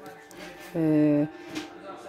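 Speech only: a single drawn-out hesitation sound, "eh", with quiet room tone around it.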